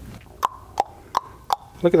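Four short, sharp clicks in an even rhythm about a third of a second apart, some with a brief ring.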